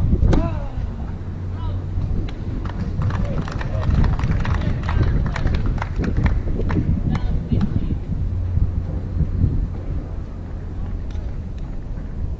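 A tennis ball struck on a clay court with a short falling grunt from a player right at the start, then several seconds of scattered applause from a small crowd as the point ends.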